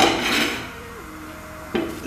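Short knocks of metal cookware, one at the start and another near the end, with a quieter stretch between.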